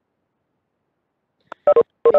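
Dead silence for about a second and a half, then a short click and a voice starting to speak loudly near the end.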